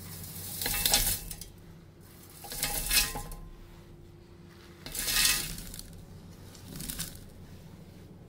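Dry grains and nuts pushed by hand off a steel plate, falling into a stainless steel mixer-grinder jar with a rattling, clinking rush, in four short pours about two seconds apart.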